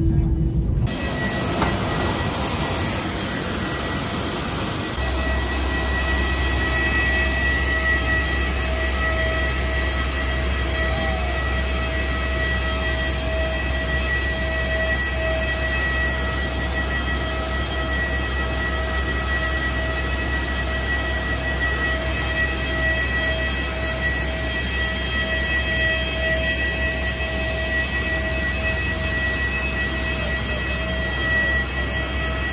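Steady high-pitched jet turbine whine over a constant low rumble, from machinery on the apron beside a parked Airbus A330. A brief stretch of cabin noise ends about a second in.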